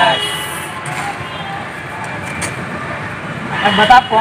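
Steady outdoor traffic noise, an even rumble and hiss of road vehicles, with a man's voice starting again near the end.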